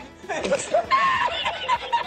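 A person chuckling briefly, over quiet background music.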